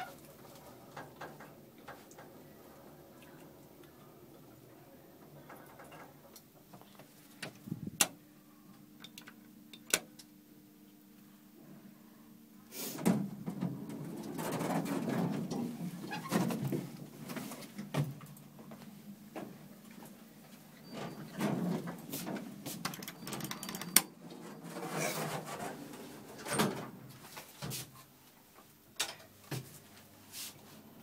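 Inside a moving Otis traction elevator car: a faint, steady low hum with a few sharp clicks, then, from about a third of the way in, louder muffled low rumbling sounds in several stretches.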